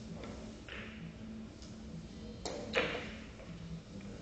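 A billiard cue striking a carom ball, a sharp click about two and a half seconds in, followed a moment later by a louder knock of ball on ball or cushion with a short ring.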